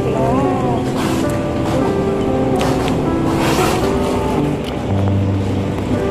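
Background music with sustained held notes.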